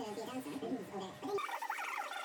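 Fast-forwarded speech, garbled and warbling. About one and a half seconds in it abruptly turns higher and thinner as the low end drops out.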